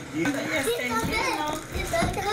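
Overlapping chatter of several voices talking at once, some of them high-pitched like children's voices.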